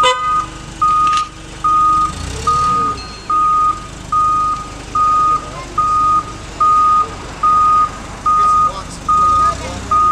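Forklift reversing alarm beeping steadily, one high single-tone beep a little under every second, over the forklift's engine running as it backs up.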